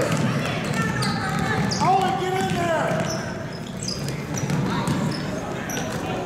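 A basketball bouncing on a hardwood gym floor and sneakers squeaking as players run, with spectators' voices calling out, one long call about two seconds in.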